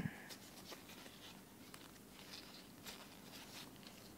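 Faint, irregular clicks and ticks of the wooden blocks of a snake cube puzzle knocking together as gloved hands twist them, with a light rustle of latex gloves.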